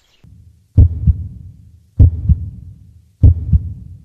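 Heartbeat sound effect: three loud double thumps (lub-dub), each pair about a third of a second apart, repeating about every 1.2 seconds from just under a second in.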